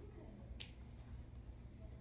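A single faint, sharp click a little over half a second in, over a low steady room hum.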